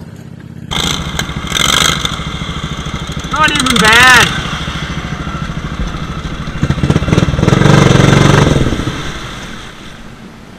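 Riding lawn mower engine running hard as the mower drives through mud and water, getting louder around two-thirds of the way in, then easing off. A person whoops loudly about halfway through the first half.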